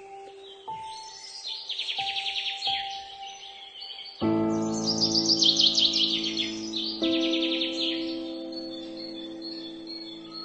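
Slow, soft solo piano with a nature track of birdsong laid over it. Single sustained notes give way to fuller chords about four seconds in and again a few seconds later, while birds sing rapid high trills several times.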